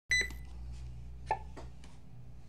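A short, high electronic beep at the very start, then a low steady hum with three light clicks or knocks in the second half, as from a camera or phone being handled.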